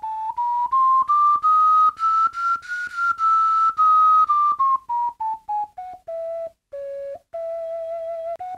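Ceramic ocarina played in short separate notes, stepping up note by note to a high note about three seconds in, then stepping back down to a lower note near the end: the player is trying out a cheap Japanese souvenir ocarina.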